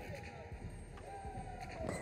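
Faint indoor ice-arena ambience after a goal: a low murmur of distant voices over an even background hum.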